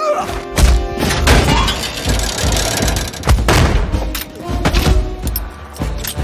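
Fight-scene sound mix: a music score under a string of heavy thuds and body impacts, several in quick succession, from punches, blows and bodies hitting the stairs.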